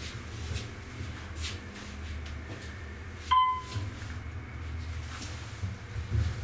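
Otis hydraulic elevator car in motion, its running giving a steady low rumble inside the cab, with a single electronic chime about three seconds in.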